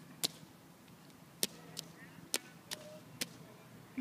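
A toddler's shoes slapping down in a shallow puddle on asphalt: about six sharp, separate steps spread across a few seconds.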